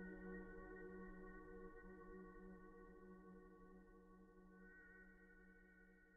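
Faint ambient relaxation music: a sustained droning tone with steady overtones, slowly fading away.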